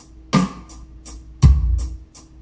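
Drum-kit backing track played back from a Pro Tools First session: kick and snare hits alternate about a second apart, with hi-hat ticks between and a steady held note underneath.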